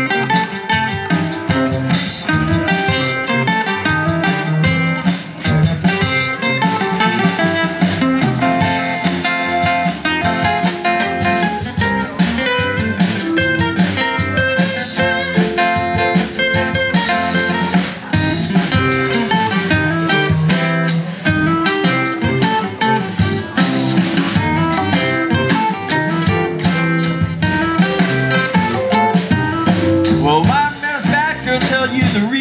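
Acoustic guitars strummed and picked together in a live instrumental blues tune with a steady beat.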